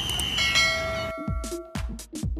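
A subscribe-button sound effect: a short click followed by a ringing notification bell chime, over outdoor field noise. About a second in the field noise cuts off and electronic dance music starts, with a kick drum about twice a second.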